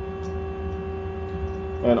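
Steady hum from the idle lathe, made of several constant, even tones; a word of speech comes in right at the end.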